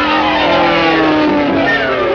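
Cartoon sound effect: a whine of several tones sliding together, swelling and then falling in pitch over about two seconds.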